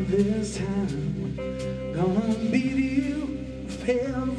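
Live blues-rock trio playing: electric guitar, bass guitar and drum kit with cymbal hits, and a male voice singing over them.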